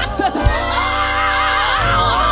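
Gospel music: a woman singing a long, wavering run into the microphone over band accompaniment, with a sharp hit about half a second in.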